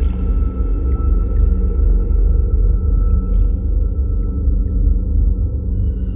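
São Paulo Metro train running: a loud, steady low rumble with a faint thin high whine above it.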